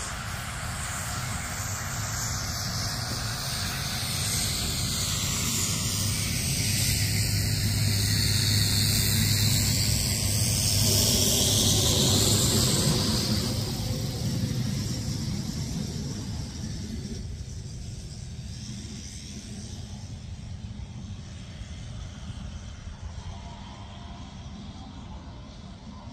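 Piston aircraft engines: one aircraft passing overhead swells to a peak about halfway through and then fades. Under it runs the steady engine sound of the SAAB B17A's radial engine as it taxis.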